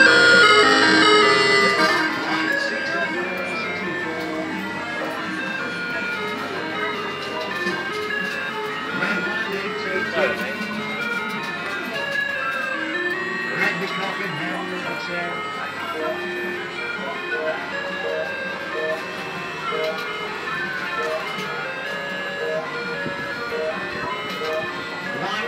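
MKC Designs mini wheel kiddie ride, a Minions wheel, playing its electronic jingle tune as the ride runs: a steady run of short stepped notes, loudest in the first couple of seconds.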